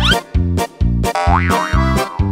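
Bouncy children's background music with a steady bass beat, overlaid with cartoon boing sound effects: a rising glide at the start and a quick rise-and-fall about halfway through.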